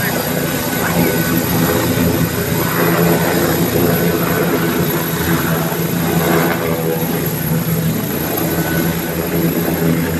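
Helicopter hovering low and settling onto a helipad, its rotor and engines running with a steady low drone throughout.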